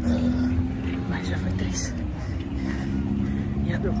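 A runner breathing hard, with short hissing breaths, while wind rumbles on the phone's microphone over a steady low hum.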